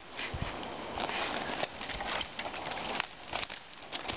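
Footsteps of a person walking over a forest floor, twigs and leaf litter crunching underfoot in an irregular series of steps.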